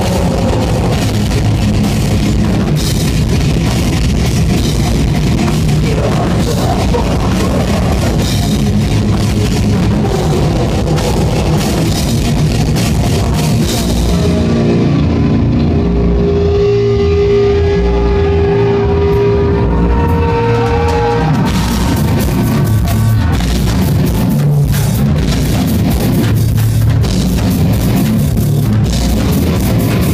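Heavy metal band playing live and loud: distorted guitar, bass and drum kit. About fourteen seconds in, the cymbals and bright guitar drop out for several seconds, leaving low rhythmic notes and a single held tone, and the full band comes back in around twenty-one seconds.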